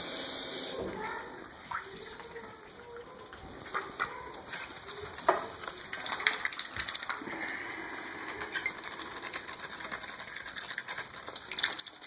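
A mallard drake dabbling with his bill in a stainless steel water bowl: rapid wet splashes and sharp clicks of the bill against the metal, growing busier about halfway through.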